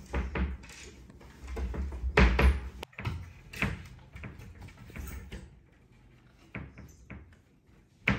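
Wardrobe door knocking and rattling as a baby monkey hangs from its handle and clambers on it: an irregular string of thumps and clicks, loudest about two seconds in, then softer scattered knocks.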